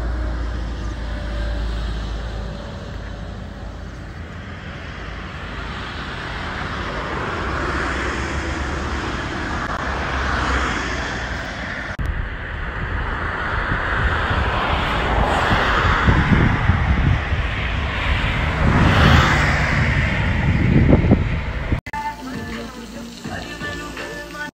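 Wind rushing and buffeting over a phone microphone on a moving motorcycle, mixed with road and engine noise. Strong low gusts of buffeting come in the second half.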